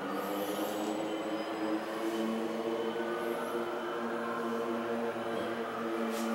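Hitachi traction passenger elevator running upward between floors, heard from inside the car: a steady running hum with several steady tones.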